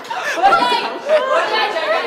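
Several people chattering and talking over one another in a large room.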